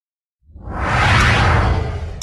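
Whoosh sound effect over a deep rumble, rising from silence about half a second in and dying away near the end.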